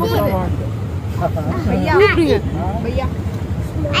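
Auto-rickshaw engine running with a steady low drone heard from inside the crowded cab, under passengers' voices talking.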